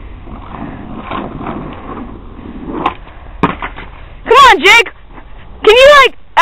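Skateboard wheels rolling on asphalt with a rough, steady sound, then a single sharp clack about three and a half seconds in as the board strikes the pavement during a failed trick attempt. Loud voice exclamations follow near the end.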